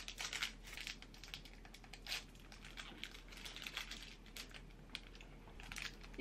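Faint, irregular crackling of a stroopwafel's plastic wrapper being handled, with small bites into the wafer.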